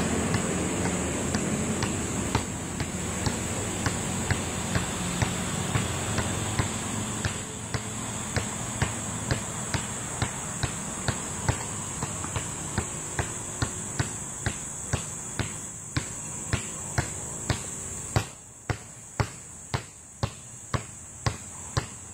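A basketball dribbled on pavement in a steady rhythm of about two bounces a second.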